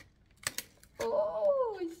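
A short crackle of thin cardboard about half a second in as a small door of a cardboard advent calendar is pressed and popped open, followed by a woman's long, falling "Oh" of surprise.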